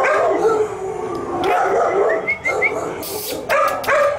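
Shelter dogs barking and howling, with a few short high yips about halfway through.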